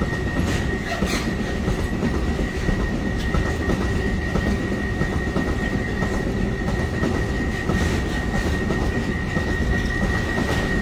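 Container freight train rolling past: a steady rumble of wagon wheels on the rails with scattered clicks, and a thin steady high whine over it.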